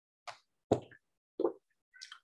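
Three brief mouth noises close to the microphone, short plops with silence between them, the second the loudest.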